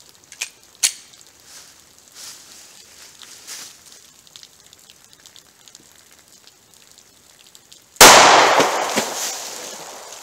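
A single .45 ACP pistol shot from a Glock 36, fired into a row of water jugs about eight seconds in. The sharp report is followed by a long echo that dies away over about two seconds.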